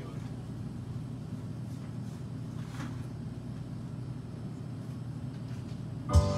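A steady low hum of room and amplifier noise, with a few faint clicks, in the pause before the guitar and piano start.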